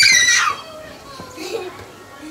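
A toddler's loud, high-pitched squeal that rises and falls in pitch and breaks off about half a second in, followed by faint quieter voices.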